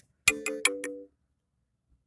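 Smartphone notification chime for an incoming app notification: a short four-note ding lasting about a second.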